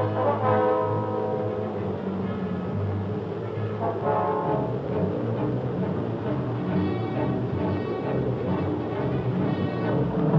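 Orchestral film score with sustained brass chords, swelling twice.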